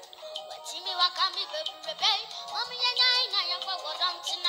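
A child singing into a microphone over music, the sung notes bending and wavering in pitch.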